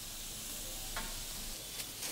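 Chicken strips and vegetables sizzling steadily on a ridged grill plate, with a couple of faint ticks.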